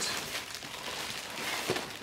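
Thin clear plastic packing film crinkling and rustling as hands pull it back from the foam packaging, with a few sharper crackles near the end.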